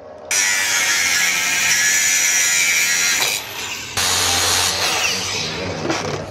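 A hand-held power tool cutting or grinding metal, starting suddenly and running about three seconds, then a short break and a second, shorter run before it goes on more quietly.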